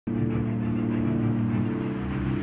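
Background music: a low, sustained drone of several held tones over a pulsing bass, starting abruptly.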